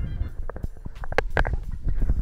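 Low rumbling movement noise: rustles and soft knocks from a person moving close to the microphone.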